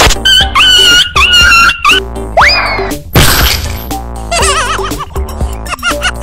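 Background music with cartoon-style comic sound effects laid over it: wavering, warbling tones, a quick upward pitch sweep a little over two seconds in, and a short noisy burst just after three seconds.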